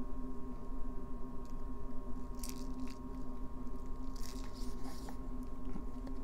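A steady low electrical hum, with a few faint brief handling noises about two and a half and four seconds in.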